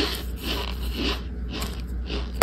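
Chewing a chunk of dried tapioca-and-cornstarch mixture, with crunches about twice a second.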